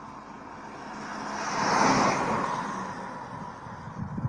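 A vehicle passing close by: its noise swells to a peak about two seconds in, then fades away.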